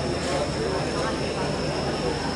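Stadium ambience: indistinct chatter of voices near the microphone over a steady background din, with a thin, steady high-pitched tone running through it.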